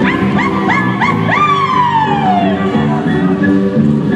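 Folk dance music with a high cry over it: about five quick rising yelps in the first second or so, then one long falling wail that dies away over about a second and a half.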